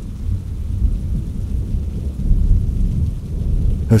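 Steady low rumble like rolling thunder, with a faint rain-like hiss above it.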